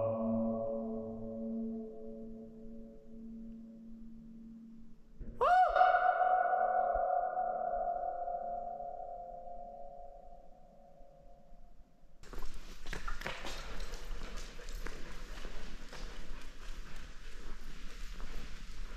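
A man's voice calling out long held tones inside a corrugated metal culvert pipe, each tone ringing on and dying away slowly in the pipe's echo; a second call swoops up sharply about five seconds in. From about twelve seconds in, a steady rough scuffing of footsteps on the pipe's floor.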